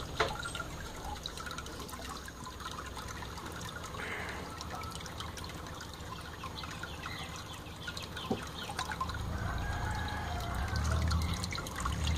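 Water trickling and dripping in a turtle tank, with small splashes as a hand reaches into the water. A low rumble comes in near the end.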